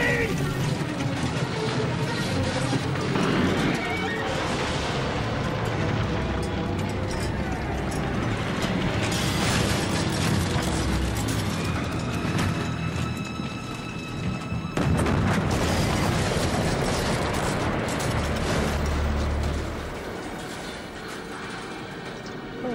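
A touring caravan rumbling and crashing as it rolls down a slope and tips over, under dramatic background music. The noise turns suddenly louder about fifteen seconds in, then eases off near the end.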